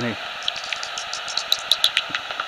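Magenta Bat 4 heterodyne bat detector hissing, with soprano pipistrelle echolocation calls coming through as sparse runs of quick clicks that grow stronger near the end. It is tuned to 45 kHz, below the bats' peak frequency, so the calls sound high-pitched and a bit tinny.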